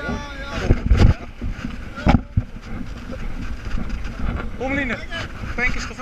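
Steady low rumble of a fire engine running, with brief voices and two loud thumps on the microphone about one and two seconds in.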